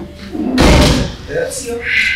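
A door shutting with a heavy thud about half a second in, followed by brief voices.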